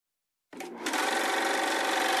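Silence, then about half a second in a steady, dense, machine-like whirring starts abruptly and holds evenly: the opening of an electronic Vocaloid song.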